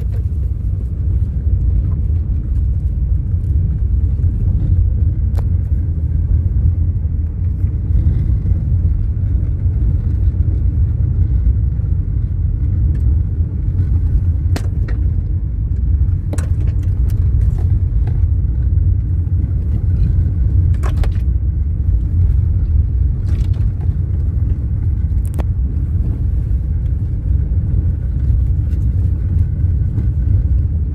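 Car cabin noise while driving slowly on a gravel road: a steady low rumble of engine and tyres on gravel, with a few sharp clicks scattered through it.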